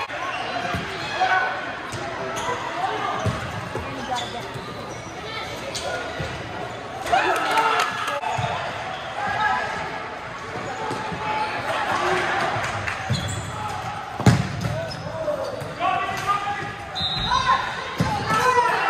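Futsal ball being kicked and bouncing on an indoor court floor, the thuds echoing in a large sports hall, amid shouting from players and spectators. The loudest thud comes about fourteen seconds in.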